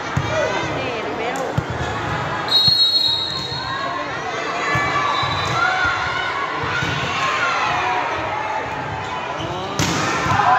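Volleyball being played in an echoing sports hall, with players and spectators shouting throughout. A volleyball bounces a couple of times, a referee's whistle sounds briefly about two and a half seconds in to start the rally, and a loud sharp smack of the ball on hands comes near the end as an attack meets the block at the net.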